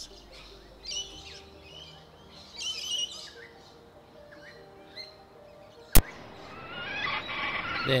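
Wild birds calling: short high chirps about a second and three seconds in, then a dense chattering burst of calls that swells near the end. A single sharp click about six seconds in is the loudest sound, and soft sustained music tones run underneath.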